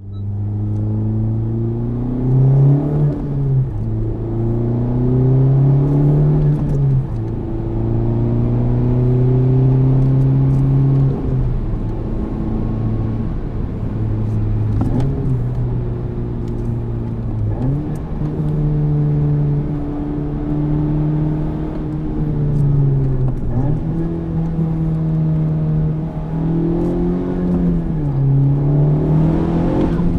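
Honda Civic Type R's turbocharged four-cylinder engine heard from inside the cabin while driving. It holds steady revs for a few seconds at a time, and its pitch steps up or down several times as it is shifted through the gears, with throttle blips on the shifts.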